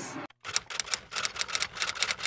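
Playing cards slapped down one after another onto a hardwood floor: a rapid run of light, sharp clicks, several a second, starting about half a second in.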